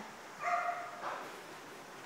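A dog barking once, a single short call about half a second in.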